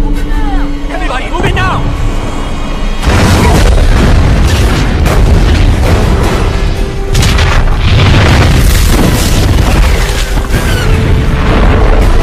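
Loud booms and deep rumbling with music, as in an action-film battle sequence. The rumbling cuts in suddenly about three seconds in and stays loud.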